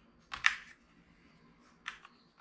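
Two sharp plastic clicks about a second and a half apart, the first louder, as small hard parts of a drone are pressed and handled by hand.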